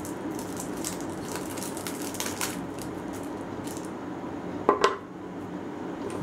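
Plastic wrap being peeled and crinkled off a 9-volt battery: a run of small crackles in the first couple of seconds, then two sharp clicks near the end, over a steady low hum.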